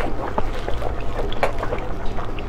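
Close-up chewing and mouth sounds of someone eating roast pork, with many small irregular clicks and crackles over a steady low rumble.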